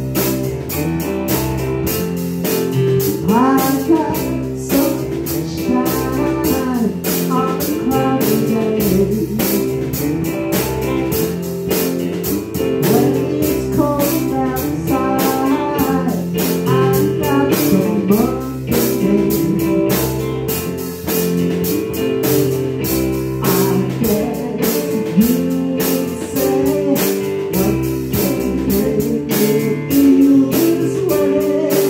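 A small live band playing a soul-pop song: electric guitar and drum kit with a steady beat, and a man singing lead at times.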